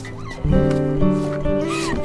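Background music: soft held chords come in about half a second in and sustain, with a brief vocal sound near the end.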